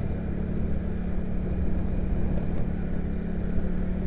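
Motorcycle engine running at a steady, even speed while riding, with road and wind noise on a helmet-mounted camera.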